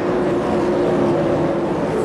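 A 410 sprint car's V8 engine running hard at racing speed, picked up by an onboard camera on the car: a steady, high-revving drone with little change in pitch.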